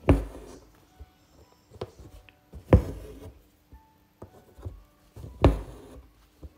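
Hand embroidery with six-strand floss in a hoop: three sudden thumps with a short rasp, evenly spaced about every two and three-quarter seconds, as each satin stitch is pushed and pulled through the taut fabric.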